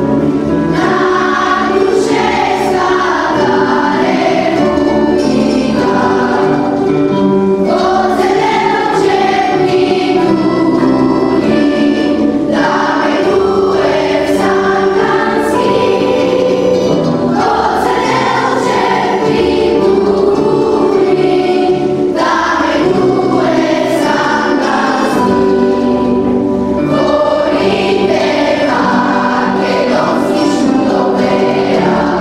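A children's choir singing a song together in phrases, accompanied by plucked string instruments and a double bass.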